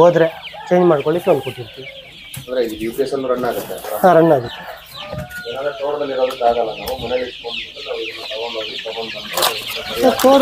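A flock of young chickens peeping and clucking: a dense chorus of high cheeps with lower, wavering calls coming and going over it.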